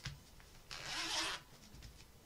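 A zipper on a sewn fabric pocket pulled once: a short sliding rasp lasting under a second, about a second in.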